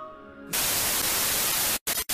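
A held musical chord, then, about half a second in, a loud burst of TV static hiss used as a transition effect. The hiss cuts out suddenly for a moment near the end and comes back briefly.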